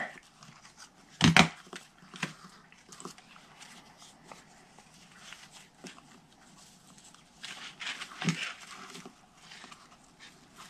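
Soft handling noise of ribbon being threaded through a metal bulldog clip and tied by hand. A short sharp sound stands out about a second in, and a few smaller ones come near the end.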